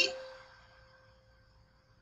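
A single held C note on an electronic keyboard, played with the right hand, dying away over the first half second and then ringing on faintly.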